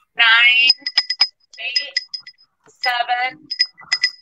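Small hand-painted Tonalá pottery bell clinking, its clapper tapping the inside in runs of quick light clinks with a short high ring, heard between spoken countdown numbers.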